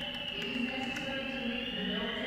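Building fire alarm sounding during a test: one long high-pitched tone that dips a little in pitch and rises again, with background music underneath.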